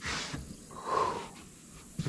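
A man breathing out heavily twice: a short sharp exhale at the start, then a longer sigh about a second in.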